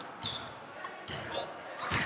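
Basketballs bouncing on a hardwood gym floor in the background: a few scattered thuds.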